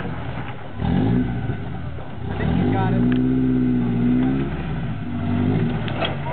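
A rock-crawler buggy's engine revving in repeated bursts under load as it climbs a near-vertical rock ledge, with a long steady high-rev pull through the middle.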